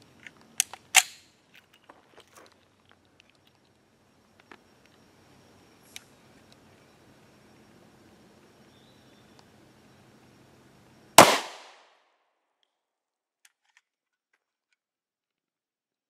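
A single loud pistol shot from an FN Five-seveN firing a 5.7x28mm round, about eleven seconds in, with a brief ringing tail. It is preceded by a few faint clicks.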